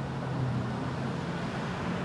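Steady road traffic noise with a low hum underneath.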